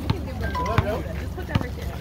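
Indistinct background talk from a group of children and adults, over a low outdoor rumble, with a few short knocks.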